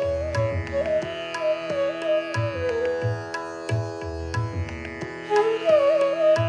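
Bansuri (bamboo flute) playing a melody in Raga Hameer with slides between notes, over a steady drone and tabla keeping a medium-tempo ektaal. The flute falls silent about halfway through and comes back in near the end, while the tabla strokes carry on.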